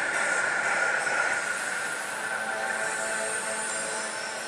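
A pachislot machine's sustained, high effect sound, which comes in suddenly and holds steady over the steady din of the slot hall. It accompanies the machine's GOD GAME announcement on its screen.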